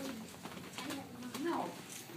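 Quiet, low-pitched speech in short murmured phrases, including a brief "no".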